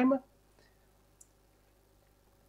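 Near silence: quiet room tone, with one faint, short click about a second in.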